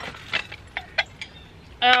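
Ceramic plates knocking against each other in a few short, light clinks as a stack of dishes is handled.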